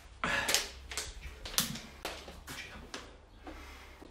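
A plastic water bottle being handled and opened: an irregular run of sharp clicks and crackles, the loudest near the start and about a second and a half in.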